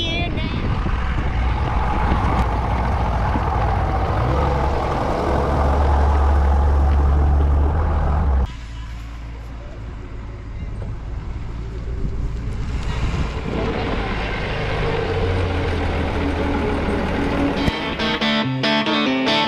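Large swamp buggy's engine running with a heavy low rumble that grows louder about five seconds in, then cuts off suddenly about eight and a half seconds in, giving way to a quieter steady hiss.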